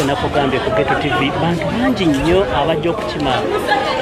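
Several people talking over one another: steady overlapping chatter of voices.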